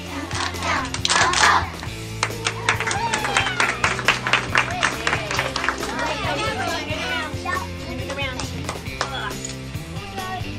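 Music playing under children's chatter in a classroom, with a quick run of sharp taps, about five a second, for a few seconds in the middle.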